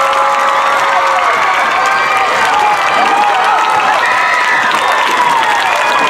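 Stadium crowd applauding and cheering, with many voices shouting over a steady wash of clapping.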